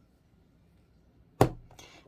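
A cube of Scentsy wax snapping apart under a crinkle cutter: one sharp crack about one and a half seconds in, followed by a few faint ticks.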